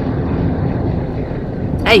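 Steady road and wind noise inside the cabin of a JAC T80 SUV cruising at highway speed.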